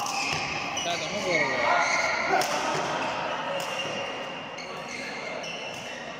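Badminton rally: rackets striking the shuttlecock with sharp hits about two and a half and three and a half seconds in, among high squeaks of players' shoes on the court mat.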